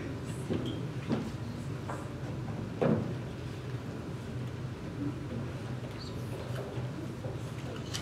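Quiet room tone with a steady low hum and a few soft knocks and thumps, the loudest about three seconds in.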